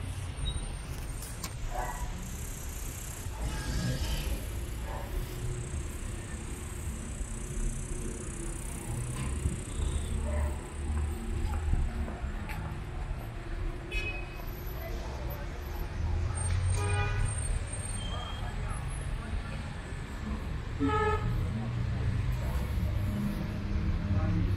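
City street traffic: cars passing and idling in a steady low rumble, with a couple of short horn toots in the second half.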